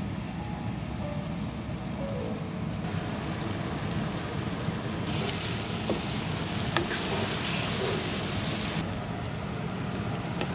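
Onion-and-spice masala and taro pieces frying in a nonstick pan: a steady sizzle that grows louder and hissier from about five to nine seconds in. A few light clicks of a wooden spatula come through the sizzle.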